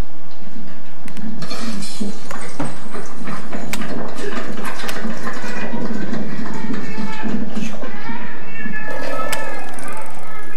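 Rustling and clicking handling noise from a camcorder being moved about close to clothing and objects, with a brief high wavering call near the end.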